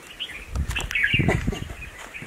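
Birds chirping, with short chirps about a quarter second in and again around a second in, over low irregular rustling.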